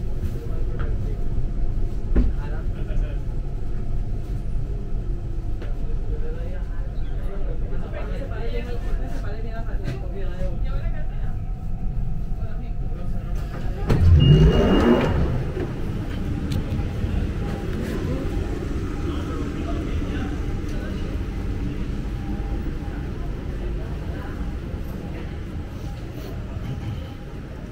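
London Underground Central line train (1992 stock) heard from inside the carriage, running slowly into a station and coming to a stand with a steady low rumble. About halfway through there is a brief, louder burst with a rising and falling pitch.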